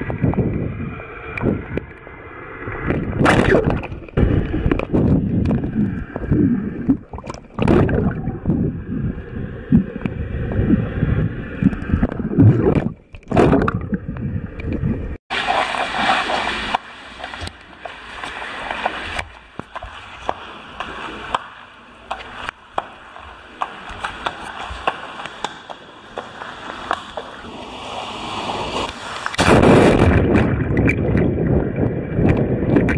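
Muffled gurgling and bubbling of water with short knocks and pops, picked up by a camera held underwater. About halfway through it cuts suddenly to a clearer open-air sound with a steady hiss.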